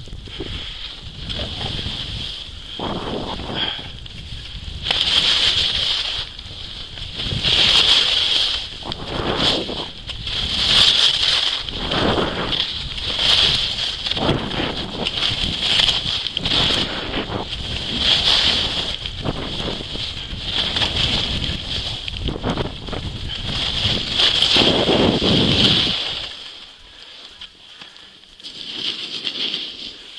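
Edges carving and scraping across packed snow on a downhill ski run, swelling with each turn about every two and a half seconds, over wind rumble on the microphone; it drops away a few seconds before the end.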